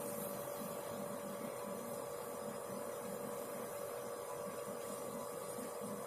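Steady electrical hum with a faint hiss. The pouring into the bowl makes no audible sound.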